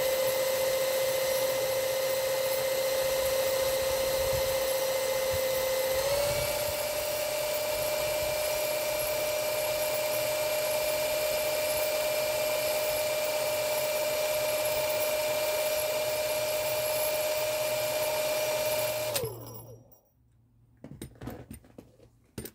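X20V cordless drill running at speed, turning the shaft of an unloaded wind turbine generator: a steady motor whine that steps up in pitch once, about six seconds in, as the drill is sped up. About nineteen seconds in the drill is released and the whine drops away and stops, leaving a few handling clicks near the end.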